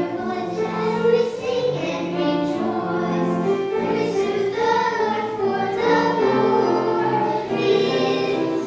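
Church choir of adult and children's voices singing an anthem in sustained, changing chords.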